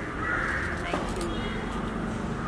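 A harsh bird call, like a crow's caw, sounds in the first second over steady street background noise.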